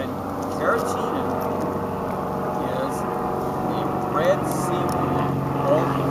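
A distant engine droning with a steady low hum that grows louder toward the end, under a few faint voice sounds.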